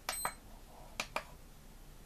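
Tenergy TB6B hobby charger's buttons being pressed: one short, high electronic key beep with a click at the start, then two quiet button clicks about a second in with no beep, as the key beep has been switched off.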